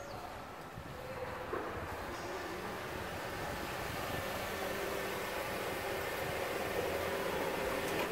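New engine oil pouring from a plastic bottle into a Toyota engine's oil filler opening without a funnel: a steady stream of liquid that grows slightly louder toward the end.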